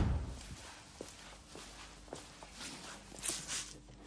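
Footsteps on a concrete garage floor as a person walks along a car, with a few light clicks and soft rustles that are a little louder near the end. A heavy thump just before fades away at the start.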